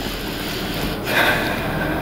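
A person breathing audibly, with one long hissing breath about a second in, over a steady low room hum.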